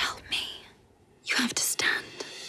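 A woman breathing hard in short, breathy gasps: one cluster, a brief silence, then a second cluster.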